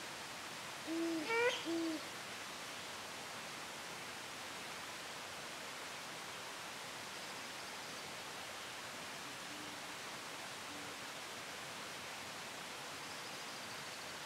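Great horned owl hooting: two short, low hoots about a second in, then two much fainter hoots around ten seconds, over a steady background hiss.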